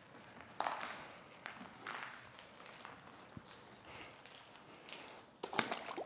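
Faint, scattered rubbing and swishing of a soft wash mitt being wiped over soapy, foam-covered car paint.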